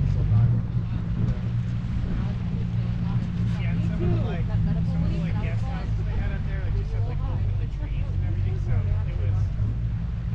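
Outboard motor of an inflatable Zodiac boat running steadily, a constant low hum, with faint conversation over it.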